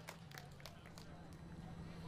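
The last scattered claps of audience applause dying away, over faint crowd chatter and a steady low hum.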